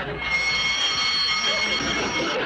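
Electric fire alarm bell ringing steadily for about two seconds, set off by an incoming telephone call.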